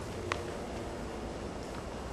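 Room tone in a pause between a lecturer's sentences: a steady low hiss, with one faint click about a third of a second in.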